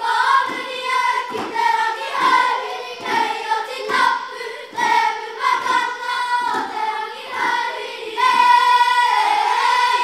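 A children's Māori kapa haka group singing a song together in unison, with low thumps about twice a second under the voices.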